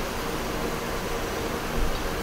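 Steady hiss of background noise, with no other sound standing out.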